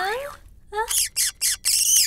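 Squeaky cartoon-character voice sounds: a gliding voiced squeal that ends just after the start, then a quick run of short squawking chirps, about five a second, through the second half.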